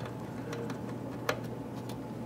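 Faint clicks and taps of fingers and a screwdriver working at the metal drive bay of a small computer case, the sharpest click a little past a second in, over a low steady hum.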